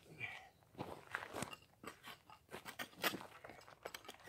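Shovel digging in gravelly soil: a string of short, irregular crunches and scrapes as the blade bites and the digger shifts his feet.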